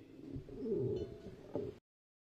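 A bird cooing in low, gliding notes, with a sharp click about a second and a half in; the audio then cuts off abruptly to silence near the end.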